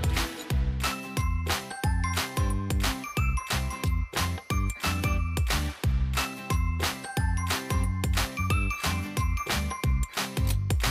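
Background music with a steady beat, deep bass and high, ringing melody notes.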